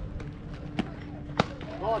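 Two sharp knocks from play at home plate in a softball game, about half a second apart, the second louder. Near the end, several voices start shouting.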